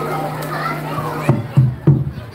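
Chatter of children and other voices over a steady low hum, then a little over a second in a kendang barrel drum starts up with a quick run of sharp, low hand strokes, the opening of a jaranan gamelan piece.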